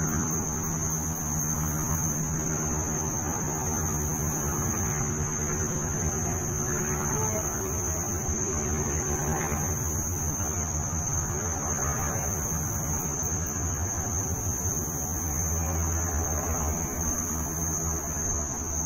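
A steady low hum with a constant thin, high-pitched whine over it, unchanging throughout.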